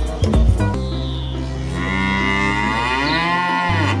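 A Holstein Friesian cow mooing: one long moo of about three seconds that starts about a second in, its pitch sinking toward the end, over backing music.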